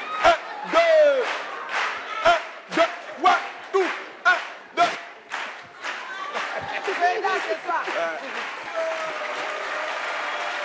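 A man shouting a marching count with stamping steps about two a second, over audience noise. The rhythm fades after about seven seconds and applause builds near the end.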